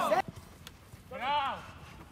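Voices during an amateur football match: a short spoken 'no' right at the start, then one long shout that rises and falls in pitch a little past the middle. A single faint knock comes in between.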